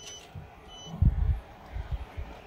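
Two short, high key-press beeps from a petrol station payment terminal as amount digits are keyed in, the first at the start and the second under a second later. Low rumbles around a second in and again near the end are louder than the beeps.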